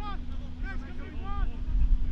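Wind rumbling on the microphone, with short distant voices calling out across the field.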